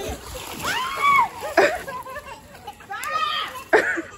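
Pool water splashing and sloshing as a baby in a swim float slaps at the surface. A high, rising-and-falling squeal comes about a second in, and there are two sharp splashes, one midway and one near the end.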